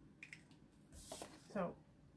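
Mostly quiet room tone with a couple of small clicks about a quarter second in, then a woman's voice near the end.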